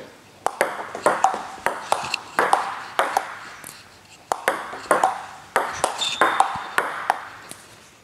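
Table tennis ball clicking repeatedly off bats and the table, about two sharp hits a second with a short echo of the hall after each.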